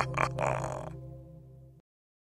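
Cartoon ghost's laugh: its last few chuckles over a held music chord. The chord fades and cuts off shortly before the end.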